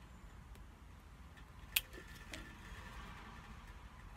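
Relighting a tobacco pipe with a lighter: one sharp lighter click a little under two seconds in, then a faint hiss for about a second and a half as the flame is drawn into the bowl.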